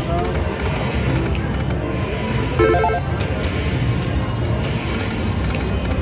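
Dragon Link Panda Magic slot machine playing its reel-spin music during a spin, over a steady casino din. Several short falling high chimes and a brief chord come in near the middle.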